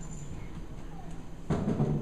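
A wooden box set down on a stage with a loud thump about one and a half seconds in, over a steady low hum.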